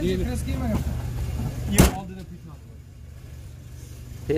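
The steel rear hatch of a 1999 Daewoo Damas minivan slammed shut: one sharp bang about two seconds in.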